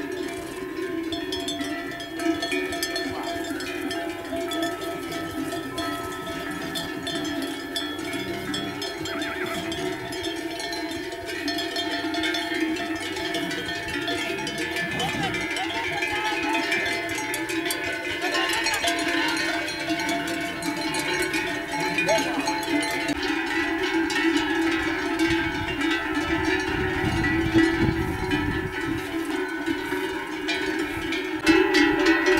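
Many bells (cencerros) on a moving herd of horses, clanking and jangling continuously in a dense overlapping chorus.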